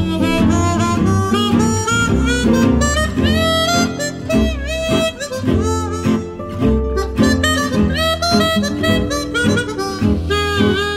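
Gypsy jazz played on chromatic harmonica: the harmonica carries the melody with slides and vibrato over a strummed acoustic guitar rhythm and double bass.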